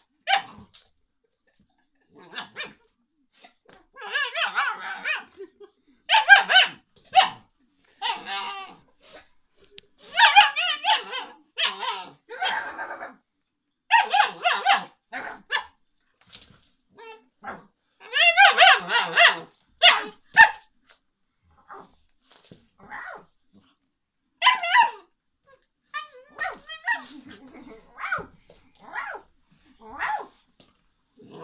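A dog barking and calling in a long series of drawn-out, pitched calls, each up to about a second long, with short pauses between; the calls grow sparser and quieter in the last third.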